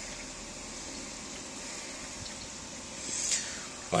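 Steady, soft hiss of water moving in a running aquarium, even and unbroken.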